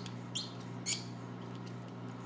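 Small hand-squeezed vacuum pump giving two short, high squeaks about half a second apart, one with each squeeze, as it draws the air out from between two O-ring-sealed metal disks. A faint steady hum lies underneath.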